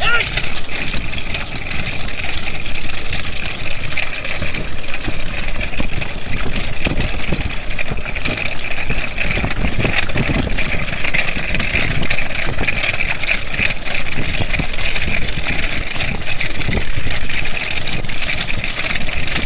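A motor vehicle's engine running steadily, with wind rumbling on the microphone, as it travels just ahead of a pair of trotting bullocks pulling a racing cart.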